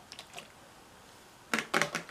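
A plastic bottle being handled close to the microphone: a few faint clicks at first, then a quick cluster of louder crackly knocks in the last half second.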